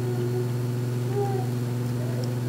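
Steady low electrical mains hum from the lectern microphone's sound system, with a faint short tone about a second in.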